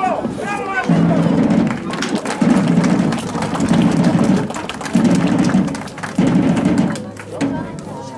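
Marching drum played in short rolls, about six in a row, each under a second long and evenly spaced.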